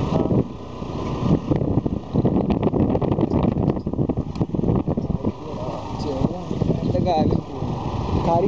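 A motor two-wheeler riding over a rough, puddled dirt track: a loud, uneven rumble of wind on the microphone and jolts from the bumpy surface, mixed with the small engine running.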